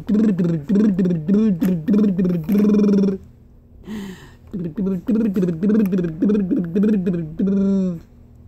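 An adult voice chanting a wordless rhythmic tune to a baby in quick syllables, about four a second, in two phrases with a short pause between them.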